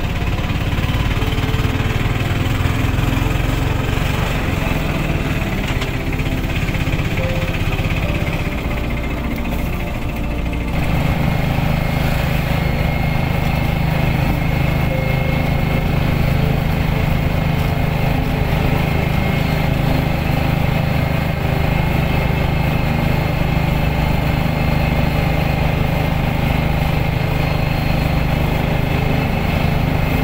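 A motor engine running steadily at a constant speed. Its sound changes abruptly about eleven seconds in, then holds steady again.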